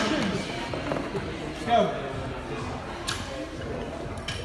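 Voices and background music in a large gym hall, with one short shout a little under two seconds in and a couple of faint knocks.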